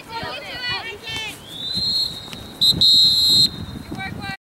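Referee's whistle: a thin high tone comes in partway through, then a short sharp blast and a longer loud blast, the whistle for the end of the first half. Players' shouts are heard in the first second.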